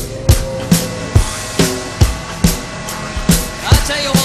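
Electronic music: a steady kick-drum beat a little over two hits a second, each kick dropping in pitch, over held synth tones. Warbling, gliding sound effects come in just before the end.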